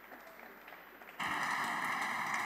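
Applause in a parliamentary chamber, faint and scattered at first, then suddenly louder and steadier about a second in.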